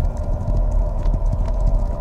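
Several horses galloping over dry ground: a fast, uneven drumming of hoofbeats, with a steady held tone running beneath.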